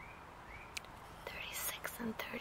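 A quiet stretch with a few faint short high chirps and a single click. In the last half second or so comes soft whispering, as a woman murmurs to herself while counting.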